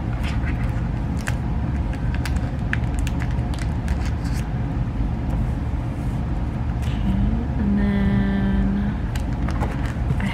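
Photocards and plastic binder sleeves being handled: light clicks, taps and rustles scattered throughout, over a steady low background rumble. A little before the end a voice gives a short held hum.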